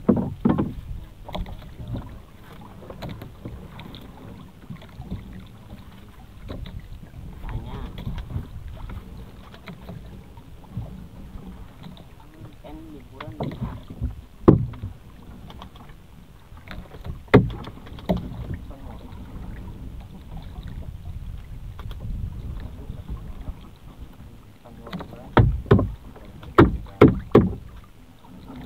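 Small boat out on the sea, with a steady low sloshing of water around the hull. Sharp knocks break through it: a loud one about halfway, another a few seconds later, and a quick run of them near the end.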